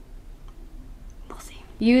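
A pause in a woman's talk: quiet room tone with a short soft breath about a second and a half in, then her voice starts again near the end.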